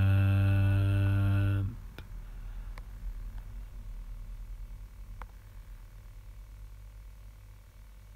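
A man's voice holding a long, drawn-out "and..." hum at one steady low pitch, cut off abruptly just under two seconds in. After it there is only faint room hum with a few light clicks.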